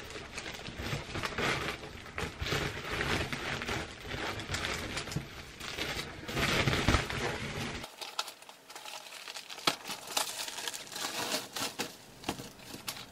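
Woven plastic sack crinkling and rustling as it is handled and shaken open, with many small crackles.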